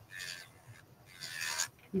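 Electric nail file's bit grinding over a gel nail extension in two short, slow passes, a soft rasping hiss.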